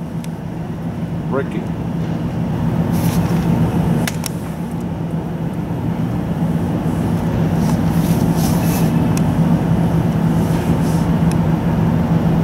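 Norfolk Southern train's GE diesel locomotives approaching, a steady low engine drone that grows gradually louder.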